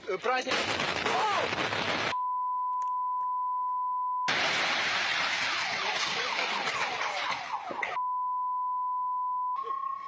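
Two long, steady censorship bleeps, each about two seconds, cut into the noisy sound of a phone live-stream recording. Between them the phone picks up loud rushing noise with voices.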